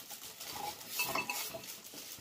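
A glass canister and its metal-banded lid clinking lightly as they are handled and lifted out of plastic packaging, with a few short clicks and brief ringing clinks about a second in.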